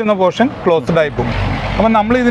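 Men talking, with a low, steady rumble coming in about a second in and running under the speech.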